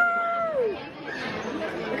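Speech only: one voice drawing out a long word that falls away, then quieter background chatter.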